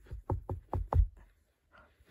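Five quick dull thumps, about four a second, on the lid above a makeshift coffin, meant as soil being shovelled onto it.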